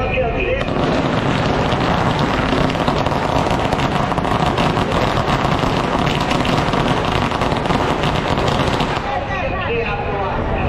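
A long string of firecrackers going off in a rapid, continuous crackle of bangs, starting about half a second in and stopping shortly before the end, over crowd voices.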